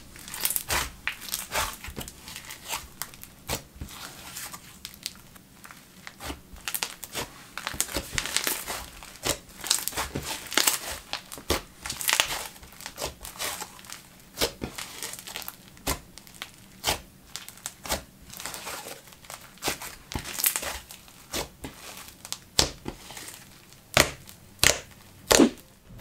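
Fingers squishing, poking and stretching a thick blue cloud cream slime. It gives a steady run of small, irregular crackles and pops.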